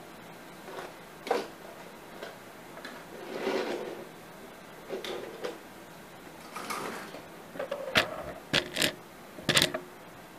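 Handling noise from a handheld camera: scattered soft rustles and light clicks and knocks, with a cluster of sharper clicks near the end.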